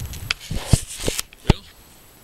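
Handling noise from a handheld camera being turned around: a run of rustles and knocks on the microphone, the sharpest a little under a second in and again about a second and a half in.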